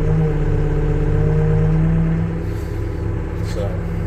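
Komatsu WB150AWS backhoe loader's diesel engine running, heard from inside the cab. Its steady drone is strongest for the first two seconds, then eases a little.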